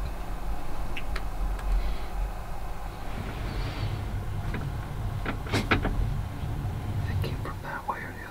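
Hushed whispering in a hunting blind, with a steady low rumble and several sharp small clicks and knocks from movement, the loudest a cluster about five and a half seconds in.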